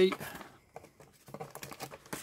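Sheets of printed paper being handled and lifted out of a cardboard kit box: a run of small, irregular clicks and soft rustles.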